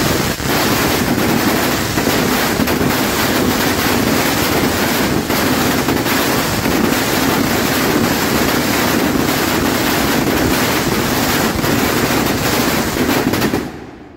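A 260-shot salute firework cake with crackle rain firing rapidly. The reports run together into a dense, continuous crackling roar that dies away near the end.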